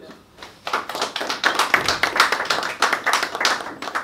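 A small group of people applauding: dense hand-clapping that starts about half a second in and fades near the end.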